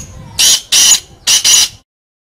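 Black francolin calling: a single phrase of several loud, harsh, high-pitched notes, the last two close together, ending just before two seconds in.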